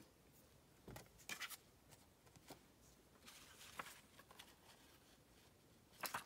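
Near silence with faint rustles and light taps of paper and card being handled, a few brief ones about a second in and again around the middle.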